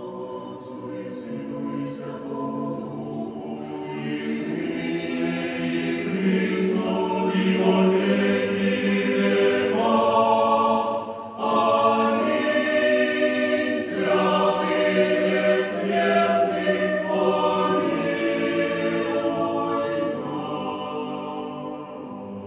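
Mixed choir of women's and men's voices singing sacred music unaccompanied. The sound swells louder over the first several seconds, breaks briefly about eleven seconds in, then carries on and softens near the end.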